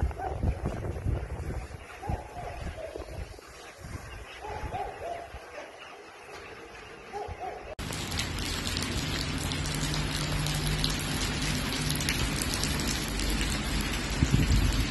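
Gusty wind rumbling on a phone microphone with a few faint short calls, then, after an abrupt cut about halfway, a steady hiss of rain falling on wet pavement.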